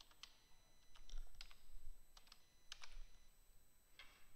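Faint typing on a computer keyboard: a few short runs of key clicks with brief pauses between them.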